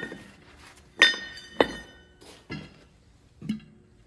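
Metal parts clinking as an engine-mounted air compressor is worked loose: a handful of sharp clinks about a second apart, each ringing briefly, the loudest about a second in.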